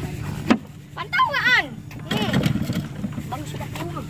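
Yamaha 8 hp Enduro two-stroke outboard motor running steadily on a test run after a new cooling-water pump impeller was fitted. A sharp click sounds about half a second in.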